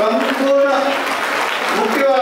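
Audience applause, with a voice speaking over it.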